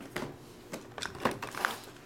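Shrink-wrapped card boxes being handled and set down on a fabric mat: a few soft plastic crinkles and light knocks.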